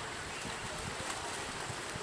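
Steady background hiss of a voice-over microphone, with no other sound.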